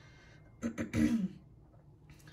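A woman clearing her throat once, a short rasp just over half a second in that lasts well under a second.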